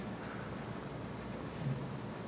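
Steady room noise with no speech, picked up by the pulpit microphone, with a faint low sound near the end.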